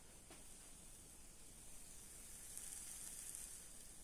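Faint steady sizzle of sweet potato and apple pie batter cooking slowly in a frying pan over a low gas flame, growing slightly louder about two and a half seconds in.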